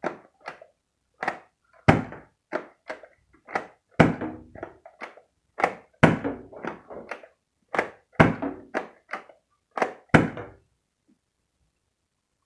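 Stock Eon Pro foam-dart blaster being primed and fired again and again: plastic clacks from the priming slide and a sharp thunk with each shot, about every two seconds. The run stops about ten and a half seconds in.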